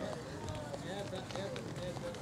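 Overlapping chatter of many voices, with no clear words, mixed with the footfalls of runners passing close by on a synthetic running track.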